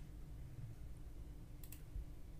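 Faint computer clicks, two quick ones close together near the end, over a low steady room hum.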